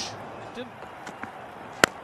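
A cricket bat striking the ball: one sharp crack near the end, over low stadium background noise.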